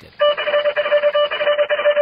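A high electronic beeping tone that flickers rapidly on and off like Morse code, used as a sound effect between news items, for nearly two seconds.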